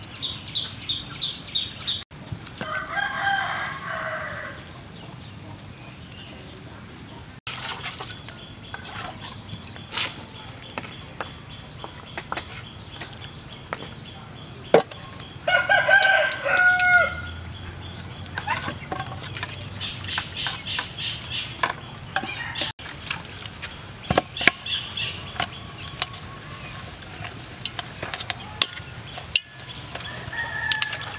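A rooster crowing twice, a few seconds in and again about halfway through, each call about two seconds long. Between the crows come small clicks and knocks of food and utensils being handled.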